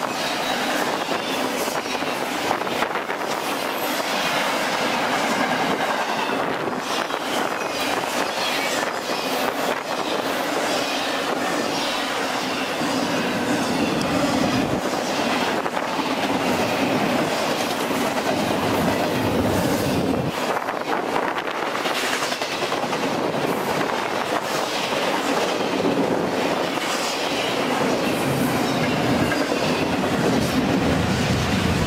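Double-stack intermodal freight train, its container-laden well cars rolling past close by with a steady rumble and irregular clacking of wheels over the rail.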